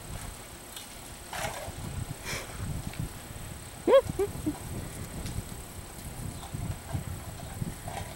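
English bulldog puppies scuffling and knocking about on gravel around a metal water bowl. About halfway through one puppy gives a short, sharp yelp, followed quickly by two smaller yips.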